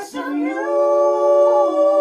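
Unaccompanied voices taking a quick breath, then holding one long sustained note, with a slight shift in pitch near the end.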